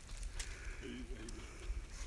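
Faint scattered clicks and rustles of a squirrel dog's paws as it walks along a fallen log among dry leaves, with a faint distant voice about a second in.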